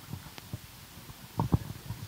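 Microphone handling noise: irregular low thumps and bumps from a live microphone being moved, with one sharp click, loudest as a cluster of bumps about one and a half seconds in.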